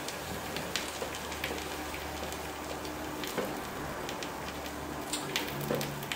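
Pizza waffle filled with sauce, cheese and salami sizzling and crackling as it bakes between the cast-iron plates of a closed waffle iron, with many small pops over a steady low hum.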